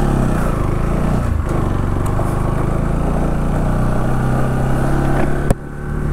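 Motorcycle engine running on the move, heard from the rider's own bike: its pitch falls over the first second and a half as it slows, then holds steady. A sharp click about five and a half seconds in, followed by a brief dip in level.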